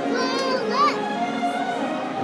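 A child's high voice calls out briefly in the first second, its pitch bending up and down. Behind it is a quieter stretch of orchestral show music.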